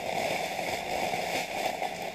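Clear plastic bags crinkling and rustling as dresses packed in them are handled.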